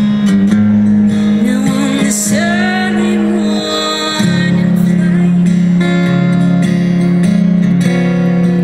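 Steel-string acoustic guitar strummed in a live solo performance, with a woman singing over it.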